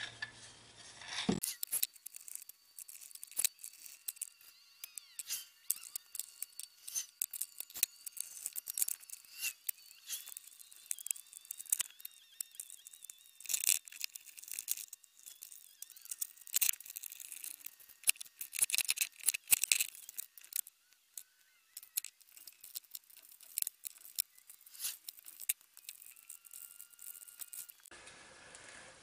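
Hands handling and fitting small parts: scattered light clicks, taps and scrapes, irregular throughout, over faint steady high-pitched tones.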